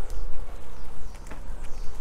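A low rumble of handling noise on a handheld camera's microphone as it is carried between trees, with a few faint clicks.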